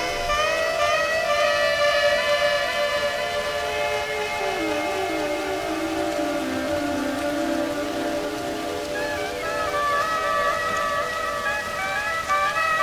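Slow woodwind melody of long, gliding held notes that dip lower midway and climb again near the end, over a steady hiss of rain.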